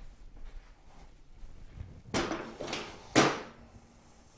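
Two clunks as the Suzuki TS250 engine is set down on the metal work stand: one about two seconds in, then a louder, sharper one a second later.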